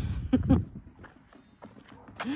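Wolf growling briefly: a low rumble with a couple of short snarls in the first half second as the two wolves squabble.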